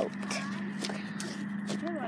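Quiet, irregular rustling and clicks of a phone being handled and carried while someone moves, over a steady low hum.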